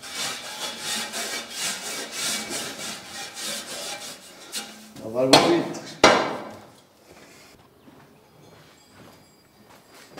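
Rapid, rhythmic scraping strokes of a long-handled brush worked over a bull's hide in a stall, about three strokes a second. It ends at about five seconds with a loud short call and then a sharp knock.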